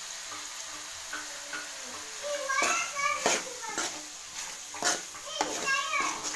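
Metal spoon scraping and knocking against a frying pan as mutton and egg fry is stirred, over a sizzle. The knocks come irregularly from about two and a half seconds in.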